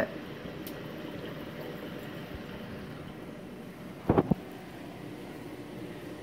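Steady hum and hiss of reef aquarium equipment running, from the pumps and powerheads that circulate the water. About four seconds in there is a brief, louder double bump.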